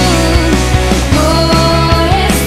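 Recorded Christian worship rock song: a full band with drums and bass playing loudly and steadily.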